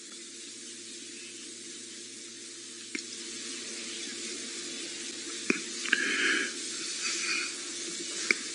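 Quiet outdoor background: a steady low hum under an even hiss, with two sharp clicks about three and five and a half seconds in and a few brief higher sounds near the end.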